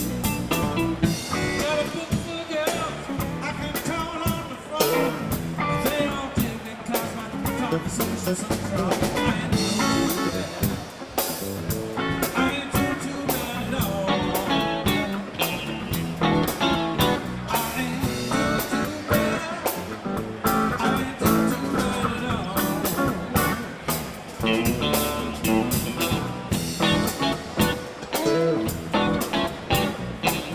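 Live blues band playing: two electric guitars, electric bass and a drum kit going steadily through a blues number.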